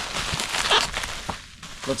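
Plastic bubble wrap crinkling and rustling as hands pull it off a stainless steel muffler, easing off briefly near the end.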